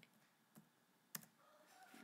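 Three short clicks of a computer mouse against near silence, the last, about a second in, the loudest.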